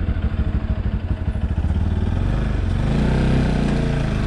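Motorcycle engine running under way, its note rising about halfway through and easing off slightly near the end.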